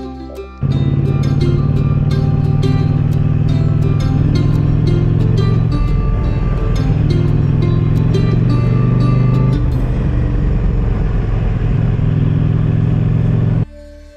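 A motorcycle engine running steadily at road speed, loud, with its note shifting about six and again about nine and a half seconds in. Plucked-string background music plays over it. The engine sound starts abruptly just under a second in and cuts off shortly before the end.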